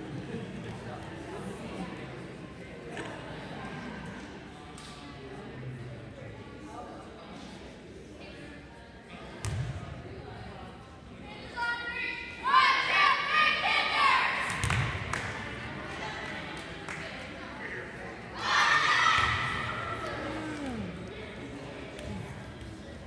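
Girls' volleyball team shouting a cheer together as they break from a huddle, a loud burst of many voices about halfway through, then a second group shout a few seconds later, echoing in a large gym. A ball thuds on the floor a couple of times, under background chatter.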